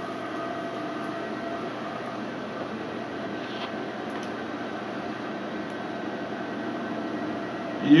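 Steady machine hum of room ventilation and medical equipment, with a few faint steady tones and one or two faint ticks midway.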